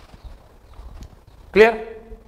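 Faint, irregular low thuds of footsteps as a man steps back and turns from the chalkboard, with a small click about a second in. Then he speaks one drawn-out word.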